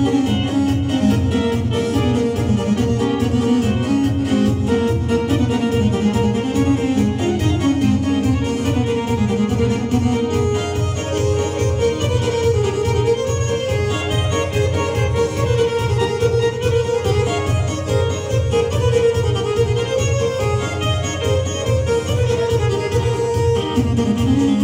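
Live kolo dance music from two electronic keyboards played through PA speakers: a steady beat under a wandering lead melody, continuous and loud.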